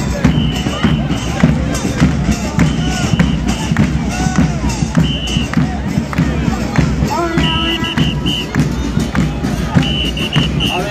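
Festive crowd of football fans singing and shouting over steadily beating drums, with repeated high-pitched blasts cutting in every few seconds, coming as a quick string of short toots near the end.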